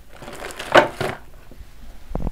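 Handling noise of sewing-machine supplies being stowed in a drawer: a burst of rustling, crinkling noise that swells to its loudest just under a second in, followed by a couple of light clicks.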